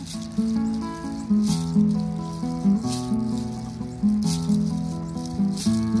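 Nylon-string classical guitar strumming a steady chord pattern, with a crisp accented strum about every one and a half seconds.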